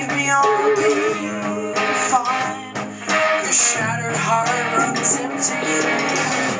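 A live rock band playing: electric guitars over drums, with cymbal hits at a steady beat.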